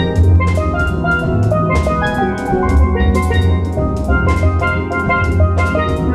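A steel drum band playing: many steel pans strike short ringing melody and chord notes over bass pans and a steady percussion beat.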